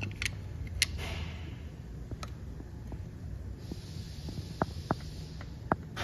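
Scattered light metallic clicks as a screwdriver pries and rocks the water pump pulley, over a steady low hum. The pulley's free play is the sign of a worn water pump bearing and bushing.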